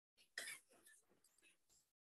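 Near silence: room tone, with one faint, brief vocal noise about half a second in.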